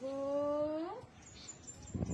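A female voice drawing out a single call for about a second, held on one pitch and rising sharply at the end, in the manner of a sung-out exercise count.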